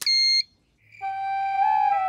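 A card payment terminal gives one short electronic beep as a card is tapped on it. About a second in, soft flute-led music begins, with held notes over a low drone.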